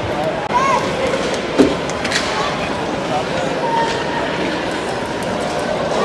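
Ice hockey arena ambience heard from rinkside: crowd chatter over players skating and handling sticks on the ice, with one sharp knock about a second and a half in.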